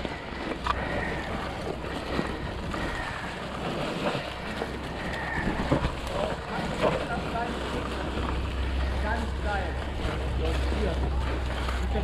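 Wind rumbling on a handlebar-mounted camera as an e-mountain bike descends a forest trail. Tyres crunch through dry fallen leaves, and the bike knocks and rattles over bumps.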